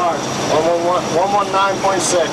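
A man's voice calling out a navigation bearing, "mark, one one nine point six", over a steady background hum.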